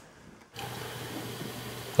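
Steady room noise with a low hum that comes in about half a second in, with faint rubbing as a tin can is handled and lifted off a wooden table.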